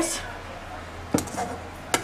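Two sharp knocks of kitchenware on the steel bowl of a food processor, one a little past a second in and one just before the end, over a faint steady hum.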